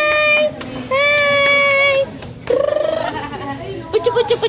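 A high voice singing two long held notes, then a short quick warbling note about two and a half seconds in.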